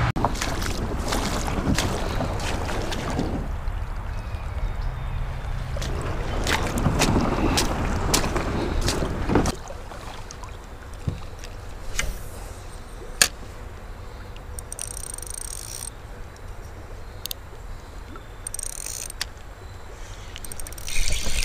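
Water sloshing and splashing against a kayak's side, with scattered knocks, for about the first nine and a half seconds. It then cuts to a quieter stretch of occasional sharp clicks and taps from handling a spinning rod and reel.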